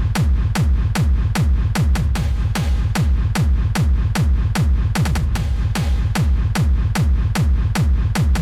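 Hard dance electronic music: a heavy kick drum on every beat, about two a second, each kick falling in pitch, with crisp high percussion between the kicks.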